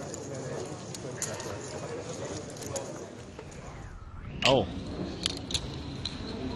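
Faint murmur of background voices with a few light clicks, then a man exclaims "oh" near the end.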